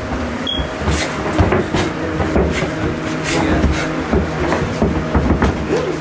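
Boxing gloves landing in sparring: a scattered, irregular run of sharp thuds and slaps, over a steady low hum.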